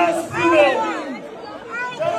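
Speech: people talking.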